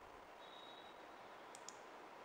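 A computer mouse click near the end: two sharp ticks in quick succession, over faint steady room hiss.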